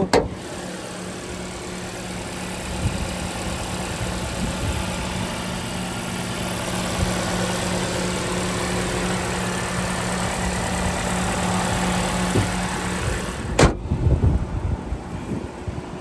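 Lexus RX 350h's 2.5-litre four-cylinder hybrid petrol engine idling with a steady, even hum and no odd noises, growing slowly louder. Near the end a single sharp knock as the bonnet is shut, then the hum drops away.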